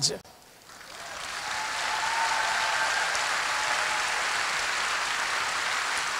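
Audience applauding, building up about a second in after a brief silence and then holding steady.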